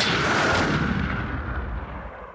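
Intro sound effect: a deep boom that swells for about half a second, then dies away slowly over the next two to three seconds.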